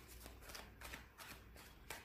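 A deck of tarot cards being shuffled by hand: faint, quick papery strokes, several a second.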